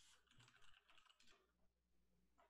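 Faint typing on a computer keyboard, a quick run of key clicks over the first second and a half, heard very quietly through a video-call microphone.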